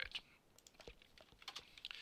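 Faint computer keyboard keystrokes: a few scattered key presses as a command is typed and entered to run a script.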